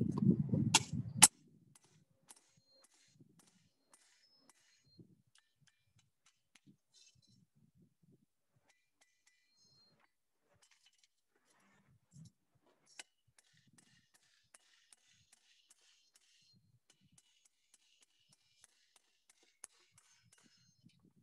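Hammer blows on hot iron at an anvil while a door hinge is forged: two sharp metallic strikes about a second in, over a brief rumbling noise, then a long run of light, faintly ringing taps that come more regularly in the second half.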